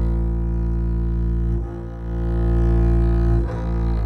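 Instrumental music: a deep bowed string instrument, double bass or cello in register, playing long held low notes, with the note changing twice.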